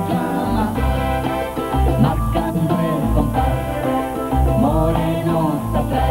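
A band's pre-recorded song played back: drum kit, electric bass and keyboard with sung vocals, a steady and continuous full mix.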